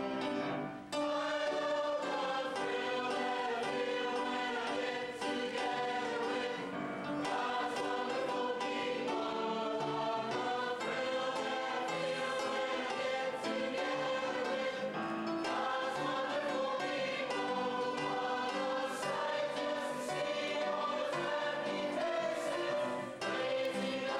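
Mixed choir of men's and women's voices singing with held notes, with a short break about a second in.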